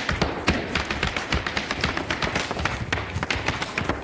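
Irish dance hard shoes striking the floor in a rapid, irregular run of taps and clicks.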